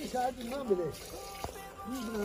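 Voices over background music, with one short click about one and a half seconds in.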